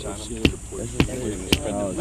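A hand-held rock knocking a wooden stake into the ground, three strikes about half a second apart.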